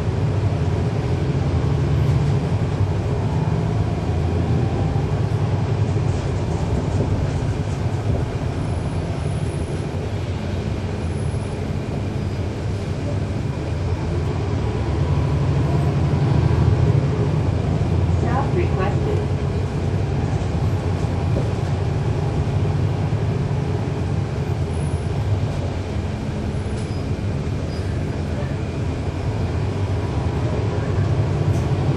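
Cummins ISL9 diesel engine of a 2012 NABI 40-SFW transit bus running while under way, its sound swelling and easing several times as the bus pulls and coasts. The ZF Ecolife six-speed automatic transmission is almost inaudible.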